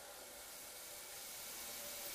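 Faint hiss of poha-and-besan dough sticks frying in hot vegetable oil as they are dropped into the pan, growing slightly louder toward the end.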